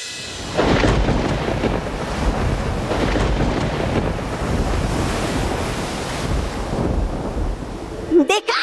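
Storm sound effect of thunder rumbling over a rough sea: a deep, heavy rumble with a rushing noise that starts suddenly about half a second in and then keeps on steadily.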